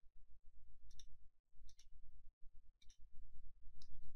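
Computer mouse clicking, about four single clicks roughly a second apart, over a low steady electrical hum.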